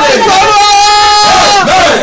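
Loud shouting voice: a cry held on one pitch for nearly a second, with gliding shouts before and after it, amid crowd voices.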